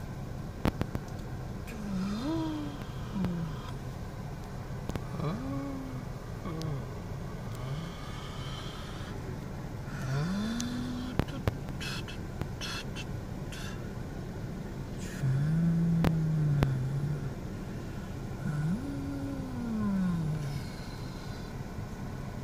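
A person's voice making engine noises for a toy digger, about six rising-and-falling hums a few seconds apart, the longest held low and loudest past the middle. A few sharp clicks come in between, over a steady low hum.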